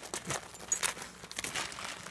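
Wrapping paper crinkling and tearing in short, irregular rustles as a dog pulls at a wrapped present with its mouth.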